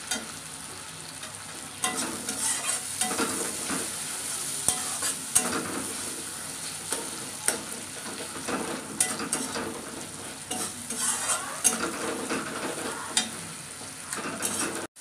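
Onion-tomato masala with green chillies sizzling in oil in a metal kadai while a flat metal spatula stirs it, scraping and tapping against the pan at irregular moments over a steady frying hiss. The masala is frying down until the oil separates at the sides.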